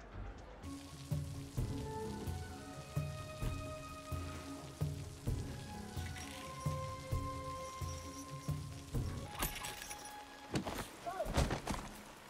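Film score music with a pulsing low beat, about two a second, under long held notes, over the steady hiss of rain. A few sharp knocks come near the end.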